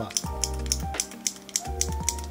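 Knock cap of a uni Kuru Toga Metal mechanical pencil being pressed repeatedly: a run of sharp clicks with a strong switch-like click, over background music.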